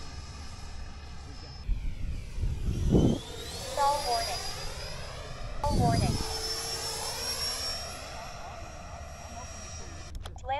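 Electric ducted-fan RC jet flying past with a high-pitched whine, passing close twice, about three and six seconds in, its pitch shifting as it goes by. Each close pass brings a brief low rush of air.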